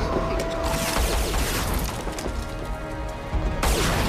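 Film gunfire and crashing impacts over a dramatic action score: a burst of shots and debris from about a second in, and a sharp loud crash near the end.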